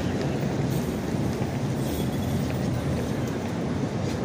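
Steady low rumble of city street traffic, with no distinct events.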